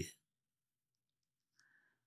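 Near silence in a pause between speech, with the tail of a man's word at the very start and a very faint brief click-like sound about a second and a half in.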